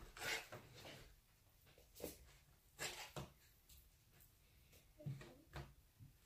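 Faint, scattered taps of a kitchen knife against a plastic cutting board as raw cod is sliced into strips, a handful of short knocks over otherwise near silence.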